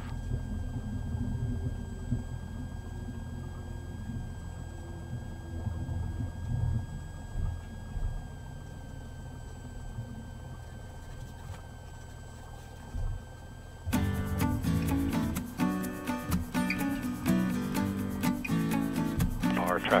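Low, steady rumble of a Cessna 182's engine at idle as the plane rolls along the runway after landing, with a faint steady whine above it. About two-thirds of the way through, background music comes in suddenly and plays to the end.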